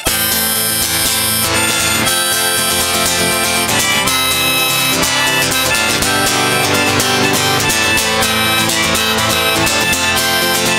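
Harmonica played over a strummed acoustic guitar in an instrumental break between sung verses. It comes in abruptly and holds a steady level.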